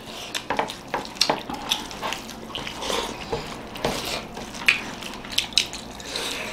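People eating rice and curry with their hands: irregular wet squishing and small clicking smacks from fingers mixing the food on the plates and from mouths eating.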